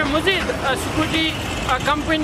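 A man speaking Hindi-Urdu into a microphone, over a low, steady rumble of street traffic.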